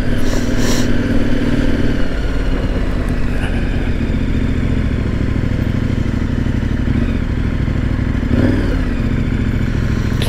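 KTM 1090 R's V-twin engine running steadily at low road speed.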